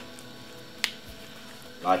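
A single sharp click a little before halfway through, as gloved hands fold a banana-leaf wrapper, over otherwise quiet handling.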